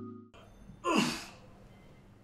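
A man's single breathy sigh, falling in pitch, about a second in, as background music cuts off at the start.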